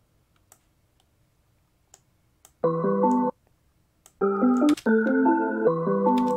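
Chopped slices of a keyboard melody loop triggered from Slicex in FL Studio: one short chord slice about two and a half seconds in, then three slices back to back from about four seconds, each starting and cutting off abruptly. Faint clicks in the quiet first part.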